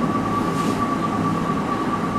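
A steady background drone with a constant thin, high whine running under it, unchanged throughout.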